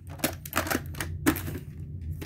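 Plastic clicks and rattles from a VHS clamshell case being handled: about half a dozen sharp, irregular clicks.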